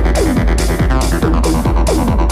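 Hard techno playing in a DJ mix: a heavy, continuous bass line under kick drums that drop in pitch, with open hi-hats hitting at about two a second in a steady driving beat.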